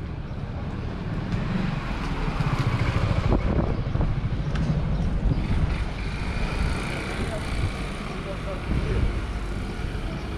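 Street sounds in a cobbled lane: a motor scooter running past, loudest about three seconds in, with indistinct voices of passers-by.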